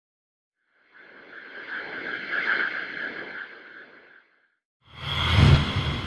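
A whoosh that swells up and fades away over about three seconds, then a sudden louder hit with a deep low end and a high ringing tone that slowly dies away.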